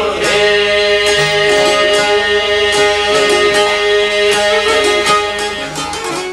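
Albanian folk ensemble of long-necked plucked lutes, with a fiddle, playing a steady tune with a quick run of plucked notes over long held tones.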